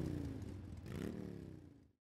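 Engine revving, its pitch falling and then rising again about a second in, fading out before the end.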